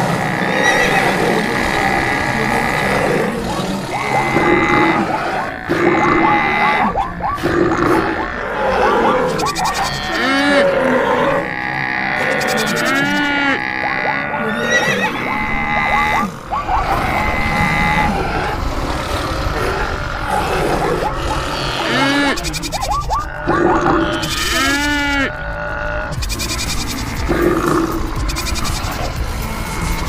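A jumble of animal calls from a stampede sound mix, several rising and falling in pitch, over background music.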